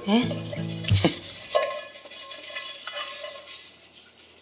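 Scraping and rubbing inside an enamel bowl at a kitchen sink, a steady rough scraping that starts about a second and a half in. Background music fades out just before it.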